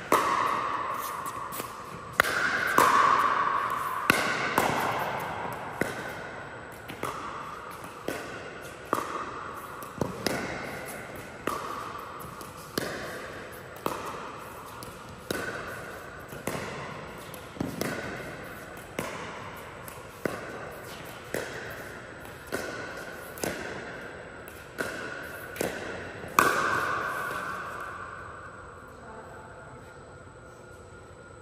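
A long pickleball rally: paddles striking the plastic ball with a sharp pop about every second and a quarter, each hit echoing in a large indoor hall. About twenty hits, and the rally stops near the end.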